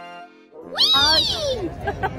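A loud, high-pitched squeal about a second in that rises and then falls in pitch, coming after a brief quieter held tone.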